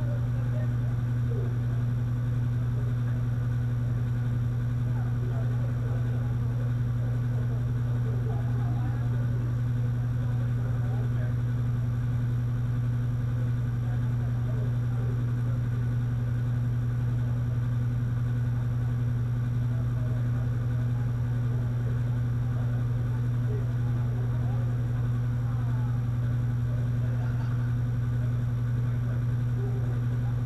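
Loud steady low hum, unchanging, with a fainter tone an octave above it. Faint distant voices come and go underneath.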